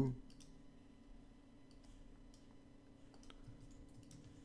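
A few faint, scattered computer mouse clicks over a steady low hum, as brush strokes are painted in Photoshop.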